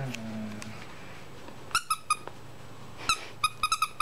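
Squeaker in a plush dog toy squeezed during play: a few short, high squeaks about two seconds in, then a quick run of squeaks near the end, each at the same pitch.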